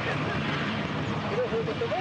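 Steady rushing outdoor noise of a brisk wind buffeting the microphone, with the low rumble beneath it, and faint voices of people talking nearby in the second half.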